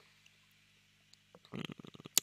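Near silence in a pause in speech: room tone with a faint low steady hum. Near the end come a few faint mouth clicks and a low murmur as the voice starts up again.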